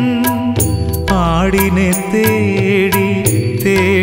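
Music from a Malayalam Christian devotional (Lenten) song: a melody line with vibrato over sustained bass notes and a steady percussion beat.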